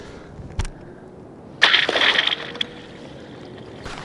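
A thrown stick hits thin pond ice with a sharp knock, then about a second later breaks through with a louder, short crunching burst: the ice is too thin to bear a person.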